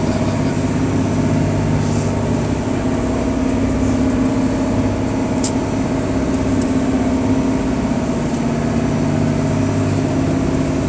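Passenger boat's engines running steadily underway, a loud, even drone with a low hum, heard from inside the enclosed passenger cabin.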